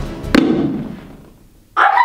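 A thrown dart striking a map on the wall: one sharp thud shortly after the start, over background music that fades away. A sudden loud voice breaks in near the end.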